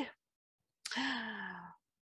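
A woman's sigh, starting about a second in: a breathy onset, then a held voiced tone that sinks slightly and stops just before the end.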